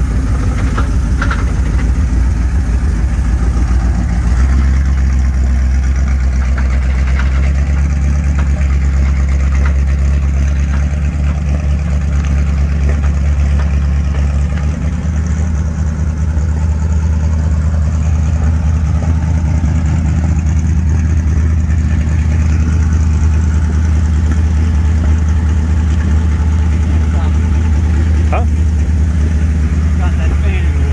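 Woodill Wildfire roadster's engine running with a steady low note as the car is driven slowly; about four seconds in, the note deepens and grows stronger.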